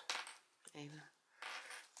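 Faint handling of paper yarn labels: a sharp click a little after half a second and light paper rustling in the second half, with a short murmur of the voice just before the one-second mark.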